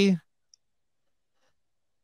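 The end of a man's spoken word, then one faint short click about half a second in, then near silence.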